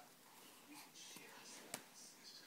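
Near silence: faint room tone, with one brief faint click near the end.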